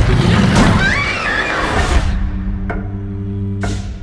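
Horror trailer sound design: a loud rushing hit opens into a shrill, wavering cry about a second in. From about two seconds on, a steady low drone of score music holds.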